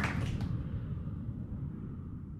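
Applause dying away: a few last scattered claps in the first half second, then only a faint low rumble, fading steadily.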